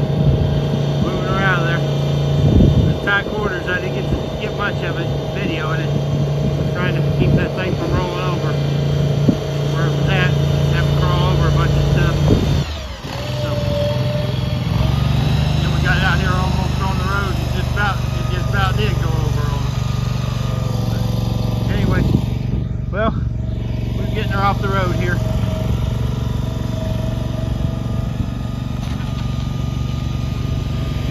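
A vehicle engine running steadily; after a cut about 13 seconds in, the small engine of a motorized shed mover runs steadily as it pushes a portable building.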